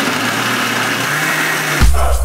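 Countertop blender running steadily, blending a pink liquid drink; music with a heavy beat comes back in near the end.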